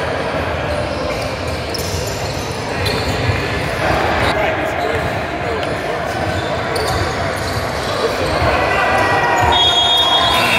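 Basketball bouncing on a hardwood gym floor amid indistinct voices of players and spectators, echoing in a large hall.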